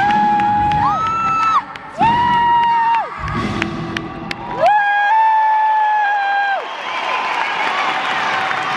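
A woman singing live over a band with drums, in a series of long held notes. About two-thirds of the way in the band drops out under one sustained note, and then a crowd cheers and whoops.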